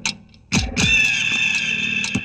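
Film background music: sharp percussion hits with falling low thuds, then a held high-pitched note that comes in just before the one-second mark and sustains.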